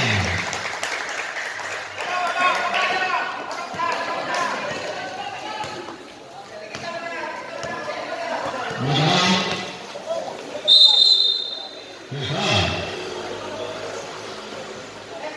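Basketball game on a concrete court: the ball bouncing amid players' and spectators' shouts, and one short, high referee's whistle blast about eleven seconds in.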